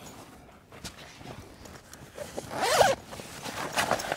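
Zipper on a Darche Dusk to Dawn 1400 canvas swag being pulled down to open the end window: a quiet first couple of seconds of handling, then a quick run of the zip about two and a half seconds in, followed by a few light clicks.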